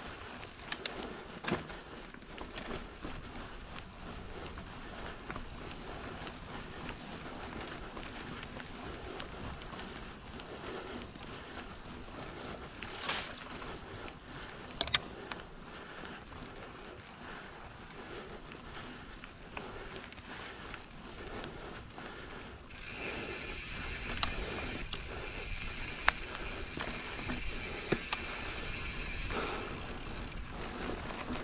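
Mountain bike rolling fast down dirt singletrack: tyre noise on packed dirt with rattling from the bike and sharp knocks about 13 and 15 seconds in. For the last several seconds it gets louder, with a steady high buzz and more clicks.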